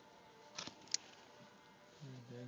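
Faint handling noises as a stitch is worked out of a finger: a brief scrape about half a second in, then a single sharp tiny click.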